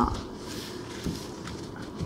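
Handling noise as woven trays of garlic bulbs and ginger root and a glass jar are shifted about on a tabletop: light rustling with two soft knocks, one at the start and one about a second in.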